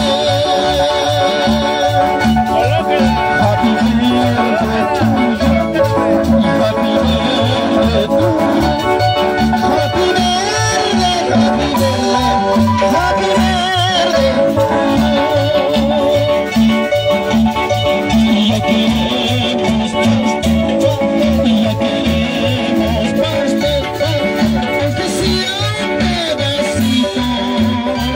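Mariachi-style music with guitars, played continuously over a regular beat.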